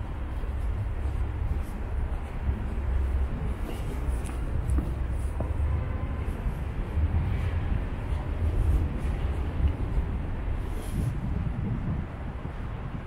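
Wind buffeting the camera's microphone, an uneven low rumble that rises and falls throughout, over faint outdoor city ambience.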